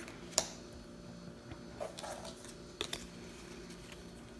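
Light clicks and taps of playing cards being set down on a tabletop and handled, the sharpest about half a second in and another near the end, over a faint steady hum.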